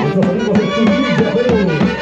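Live Andean Santiago dance music: a brass band of saxophones playing the tune over a steady beat of small hand-held drums.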